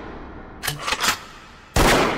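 Edited-in gunshot sound effects: two short shots about half a second apart, then a much louder shot near the end as the music cuts back in.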